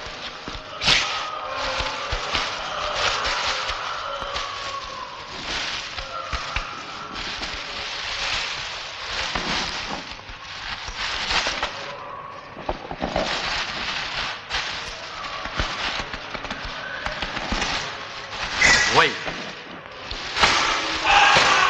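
Eerie film sound effects: drawn-out, wavering moan-like tones over a dense, crackling hiss, with a sharp louder burst about a second in and again near the end.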